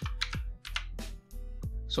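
A quick run of computer keyboard keystrokes, typing a short search word, over quiet background music.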